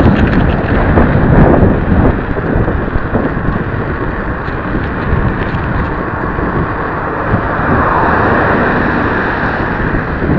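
Loud, steady wind noise buffeting the microphone of a small camera on a moving bicycle.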